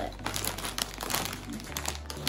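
A snack-chip bag crinkling as it is handled and turned over in the hand, a run of irregular crackles.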